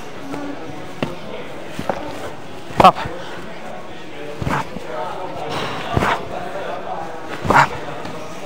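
Boxing gloves smacking into focus mitts as counter jabs land, a series of sharp smacks about a second apart, the loudest ones paired with a short shouted 'op!' cue.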